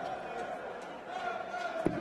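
Arena crowd hubbub, with one sharp thud near the end as a steel-tip dart strikes the bristle dartboard.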